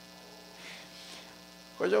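A faint, steady electrical hum, with a man's voice starting to speak near the end.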